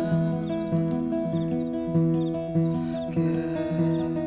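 Takamine acoustic guitar fingerpicked, an instrumental passage of plucked notes and chords that ring over each other in a steady, unhurried rhythm.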